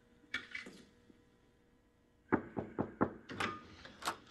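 A bedroom door being opened: one short sound about a third of a second in, then, from past the middle, a quick run of sharp knocks and clacks.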